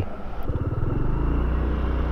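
Motorbike engine idling steadily at close range, its low rumble settling in about half a second in.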